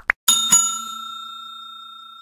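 Two quick mouse-click sound effects, then a notification bell sound effect struck twice in quick succession, its tones ringing out and fading slowly.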